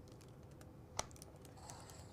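Westcott Carbo Titanium sliding paper trimmer being worked: one sharp click about a second in as the cutter head is handled, then a few faint light ticks as it moves along the rail.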